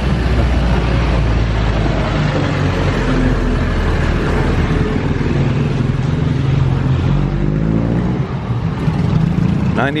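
Small motorcycle engines and street traffic running close by: a steady engine hum whose pitch shifts as vehicles pass.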